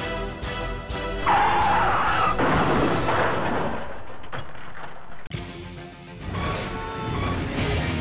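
Background music with a steady beat, cut across about a second in by the loud noise of a car crash that dies away over about two seconds. The music drops away briefly after the middle and then returns.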